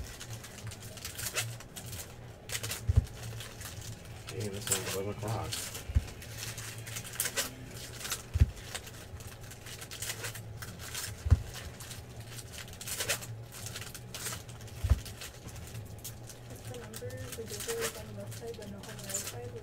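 Foil trading-card packs being torn open and crinkled by hand, with a dull knock every two to three seconds as cards are set down on the table.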